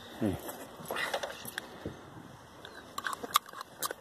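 Sheep being caught and handled in a wooden pen for drenching: scattered sharp clicks and knocks, with a quick run of clicks near the end. A short falling vocal sound comes about a quarter second in.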